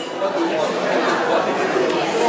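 Indistinct chatter of many people talking at once in a large hall.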